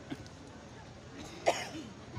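A quiet lull with low background noise, broken by a person's short vocal sound about one and a half seconds in and a smaller one just after the start.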